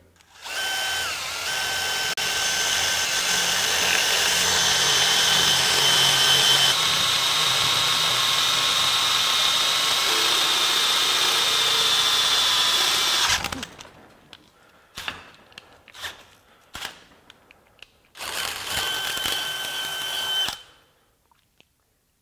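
DeWalt XR cordless drill driving a half-inch Spyder Mach Blue Stinger bit through 3/8-inch plate steel with no pilot hole, running steadily under load with a high whine for about 13 seconds, then stopping. A few knocks follow, and near the end the drill runs again for about two seconds.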